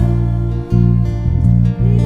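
Worship band playing a slow, gentle song on strummed guitars, with deep sustained bass notes that change twice.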